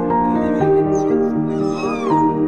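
Background music of slow held notes, with a dog's high whine rising and falling in pitch near the end.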